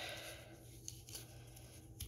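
Faint rustling and crinkling of a plastic bottle funnel and a rubber balloon being handled as a baking-soda-and-conditioner mix is worked down into the balloon, over a low steady room hum.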